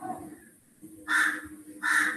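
A bird calling in the background: two short calls about three-quarters of a second apart.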